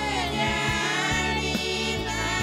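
A group of women singing a Christian song together in Pitjantjatjara, with a steady low note held beneath the voices.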